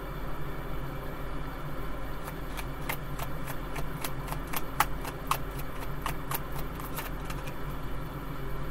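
A deck of tarot cards being shuffled in the hands: a run of light, irregular snapping clicks from about two seconds in until near the end. A steady low hum lies underneath.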